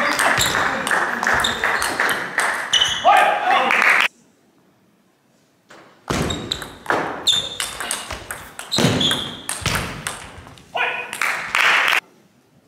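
Applause and crowd noise in a large hall with scattered ball clicks, cut off suddenly about four seconds in. After a short silence comes a table tennis rally: the ball clicking sharply off rackets and table in quick exchanges, with a short shout near the end.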